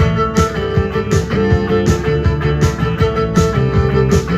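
Live rock band playing an instrumental passage: electric guitar, bass guitar, drum kit and violin over a steady beat of about two drum hits a second.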